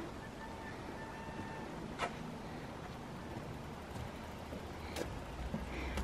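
Quiet outdoor background: a steady low rumble of ambient noise, a faint held tone for about a second near the start, and two faint clicks about three seconds apart.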